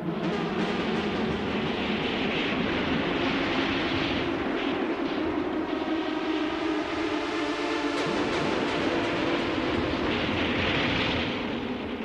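Hand-pushed narrow-gauge rail trolley rolling on its steel wheels along the track, a steady rumble that eases off near the end.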